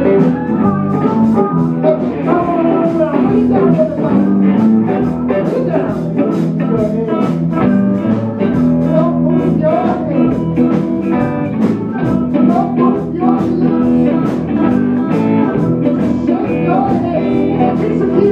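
Live blues band playing: amplified harmonica with bending notes over electric guitars, electric bass and drums, at a steady, loud level.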